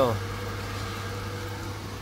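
Steady low machine hum with a faint constant higher tone, unchanging throughout.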